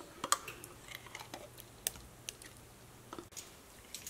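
Faint, scattered small clicks and taps as mayonnaise is scooped into a glass blender jar, a utensil knocking lightly against the glass.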